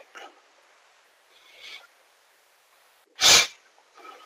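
A single short, sharp burst of breath from a person, about three seconds in and the loudest sound here, with faint low noises before it.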